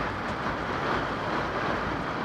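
Steady road-traffic noise with no distinct event standing out.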